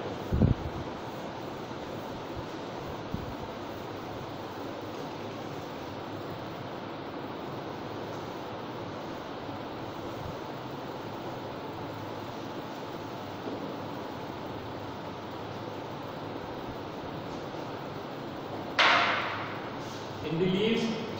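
A chalkboard being wiped with a duster: a soft, even rubbing, with a single thump just after the start and a short rushing sound near the end.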